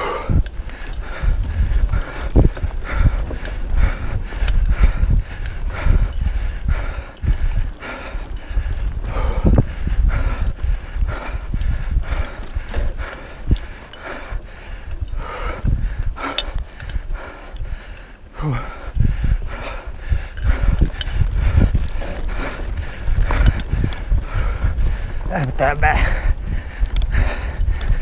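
Mountain bike riding fast over a bumpy dirt trail: the bike rattles and knocks continually, with low wind rumble on the bike-mounted camera's microphone.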